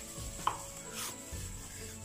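Hands kneading spiced beef mince with oil in a glass bowl: soft squishing strokes about every half second, with one sharper one about half a second in.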